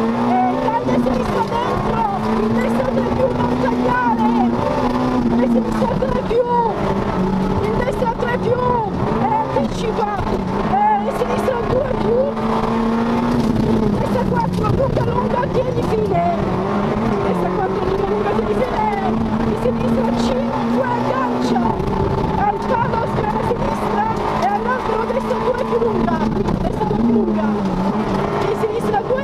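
Peugeot 106 N2 rally car's four-cylinder engine heard from inside the cabin, held at high revs at full throttle, with the revs dropping and climbing again several times for gear changes and braking into corners.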